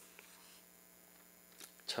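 Faint, steady electrical mains hum from the microphone's sound system, with a couple of faint clicks; a man's voice starts a word right at the end.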